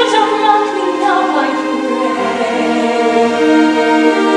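Live stage-musical music: a singing voice over sustained orchestral chords.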